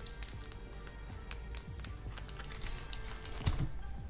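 Scattered light clicks and ticks from a cigar in its clear plastic sleeve being handled, under faint background music.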